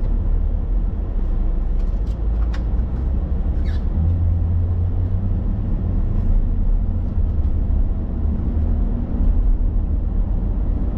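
Steady low rumble of a car's engine and road noise heard from inside the cabin, growing stronger about four seconds in as the car gets moving. A few faint clicks come in the first few seconds.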